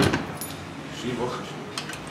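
Metal coin-slide mechanism of a coin-operated pool table being pushed and rattled by hand: a sharp metallic clack at the start, a lighter click about half a second in, and a few more clinks near the end.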